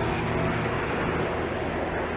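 Steady outdoor airport ambience with the even noise of distant jet aircraft. A few held music notes die away in the first half second.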